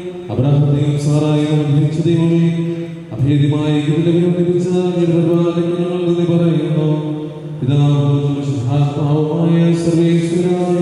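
A priest chanting a liturgical prayer in long, sustained phrases in a low male voice, with brief pauses about three seconds in and again near eight seconds.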